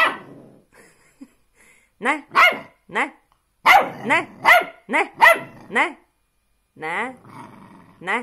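Puppy barking and yapping in a run of short, pitched calls whose pitch bends up and down, sounding almost like talking back. One call comes at the start, a quick string of about ten follows in the middle, and a longer, wavering call comes near the end.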